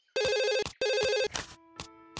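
Telephone ringing: two rings of about half a second each, one right after the other, followed by a few faint clicks.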